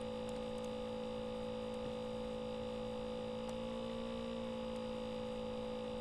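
Steady electrical hum with two constant tones, one low and one higher, and a few faint, short high ticks.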